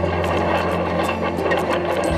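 Tractor engine running with a steady hum as it tows a planter across the field.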